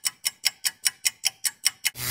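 A ticking sound effect: sharp, evenly spaced ticks, about five a second. Right at the end a loud rushing swell cuts in.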